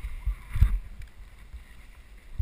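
Dull low thumps and knocks on the camera's microphone as the dirt bike jolts along a rough forest track, the loudest a little past half a second in, over a faint background rush.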